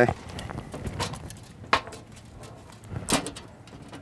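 Quiet handling sounds of monofilament fishing line and small plastic rig parts, including a sbirolino float, being fitted by hand on a tabletop, with a few short clicks. The sharpest click comes about three seconds in.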